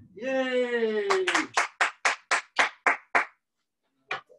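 A person's drawn-out cheer falling in pitch, joined by a run of about nine hand claps, about four a second, that stop a little after three seconds in.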